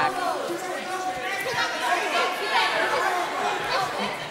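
Arena crowd chatter: many voices talking and shouting at once.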